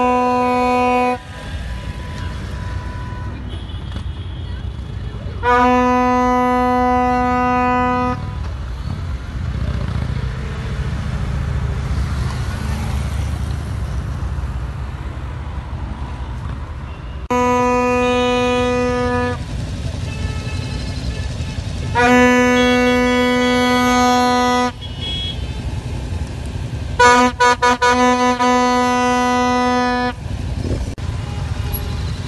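Vehicle horn honking in five long blasts a few seconds apart, the last one starting as a rapid string of short toots before being held, over the steady rumble of passing traffic.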